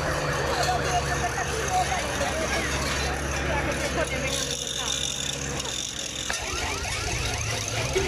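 Carnival parade crowd chatter over the steady hum of a vehicle engine, with a long wavering note that fades out about six seconds in.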